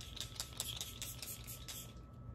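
Pump bottle of Milk Makeup Hydro Grip setting spray spritzing a fine mist onto the face. It is pumped rapidly, a quick run of short hissing spritzes at about five or six a second.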